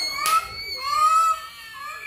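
A toddler crying in high, wavering wails: two long wails broken by a short sob about a third of a second in.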